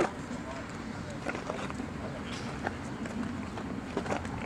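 Quiet outdoor background at a ballfield between shouts: a steady low hiss with a few faint, distant ticks.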